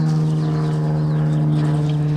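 A steady, unchanging mechanical hum at one low pitch, from an unseen engine or motor running nearby.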